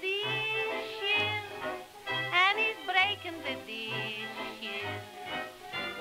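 Early-1930s popular song recording in a short break between sung lines. The dance-band accompaniment plays a melody of sliding, wavering notes over a bass line.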